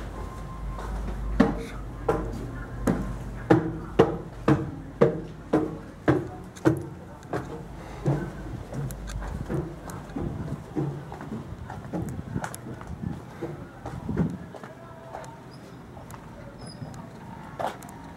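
Footsteps on steel diamond-plate stair treads and a ship's steel deck, sharp knocks about two a second that thin out after the first half.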